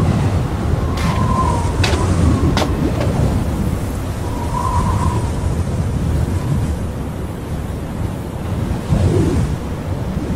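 Steady low rumbling noise like wind, with a few faint clicks in the first three seconds.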